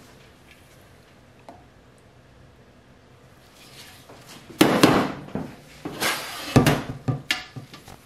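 Quiet room tone, then from about halfway through a cluster of knocks and clatters lasting about three seconds as a stainless steel pot and plastic buckets are set down and handled on a stainless steel worktable.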